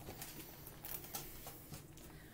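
Faint crinkling and a few soft clicks of laminated pages being turned in a ring-bound book.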